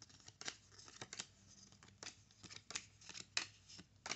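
Pokémon trading cards flipped through one at a time in the hand: faint, irregular clicks and flicks of card stock sliding past card stock.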